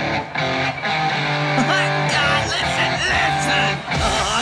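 Rock band music led by electric guitar, with long held notes and wavering, bending high notes through the middle.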